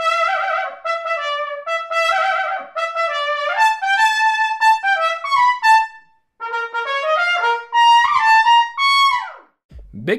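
Trumpet played through a custom Pops A+ 26-throat mouthpiece: a phrase of quick, separate notes, a short breath about six seconds in, then a second phrase that ends in a falling slide.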